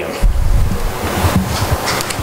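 Audience applauding, a dense steady patter of clapping in a hall.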